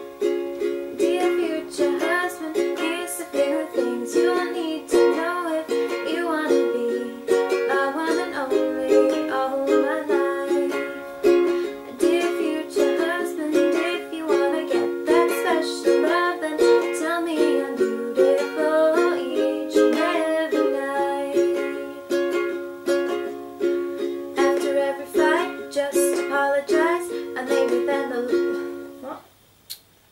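Ukulele strummed in steady chords, with a female voice singing a melody over it at times. The playing breaks off suddenly about a second before the end, because the performance has gone wrong.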